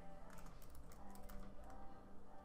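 Faint, quick keystrokes on a computer keyboard as a word is typed.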